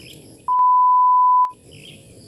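An edited-in censor bleep: a single steady pure tone at about 1 kHz, lasting about a second from about half a second in, with the rest of the sound track muted while it plays.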